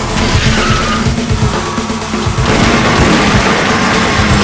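Loud dramatic film score, with a car racing in and its tyres skidding.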